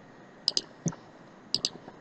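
Computer mouse clicking: about five short, quiet clicks, in two quick pairs about a second apart with a single click between.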